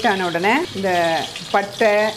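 A woman talking in Tamil, with no other sound standing out.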